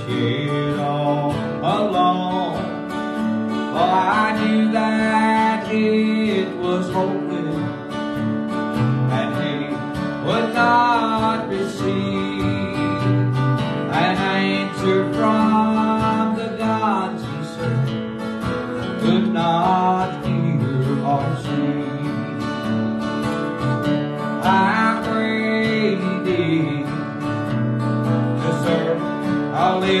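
Country gospel song in D: a man singing over strummed acoustic guitar, with a second plucked string instrument accompanying.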